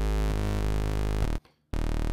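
Xfer Serum software synthesizer sounding a low sustained note whose tone shifts as the wavetable waveform is redrawn by hand. The note cuts off about a second and a half in, and a short second note starts near the end.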